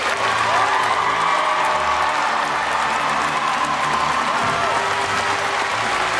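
A large audience applauding steadily, with music playing underneath.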